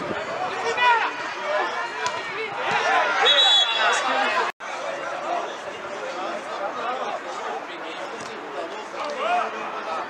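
Indistinct, overlapping voices of football players and spectators shouting and calling out during play. The sound drops out for an instant about halfway through.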